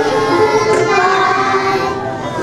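A group of young children singing a song together.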